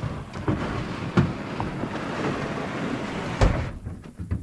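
Plastic hull of a Sun Dolphin American 12 jon boat scraping as it is slid into a pickup truck bed, with a few knocks and one heavy thump about three and a half seconds in.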